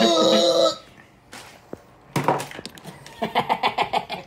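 A young man laughing: a laugh tails off in the first second, and after a pause with a short breathy rustle, a quick stuttering run of laughter starts near the end.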